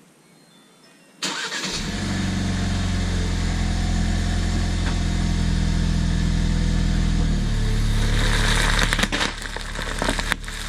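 Ford Bronco engine cranking and starting about a second in, then running at a steady idle, with a change in its note about seven seconds in. Near the end, crackling pops begin as the tyre rolls onto bubble wrap.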